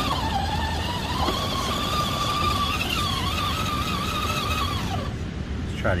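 Electric drive motor and gearbox of a Redcat Gen-7 RC rock crawler whining under load as it climbs a steep rock ledge. The whine rises a little in pitch about a second in, wavers, and cuts off about five seconds in.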